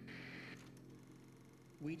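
A pause in a man's narration, filled by a faint steady low hum, with a soft breathy sound at the start. The voice starts again just before the end.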